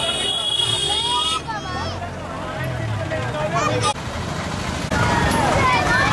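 Crowd of people talking and calling out over one another, with a vehicle engine running low beneath. A steady high tone sounds in the first second and a half, then cuts off.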